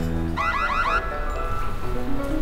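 Editing sound effect: a quick run of about five rising electronic chirps, like a small alarm, over background music.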